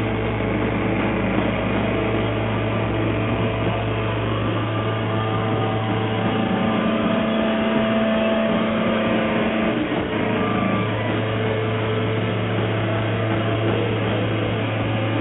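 Live rock band's electric guitars and amplifiers holding a loud, steady drone of feedback and hum, with long sustained tones that shift every few seconds.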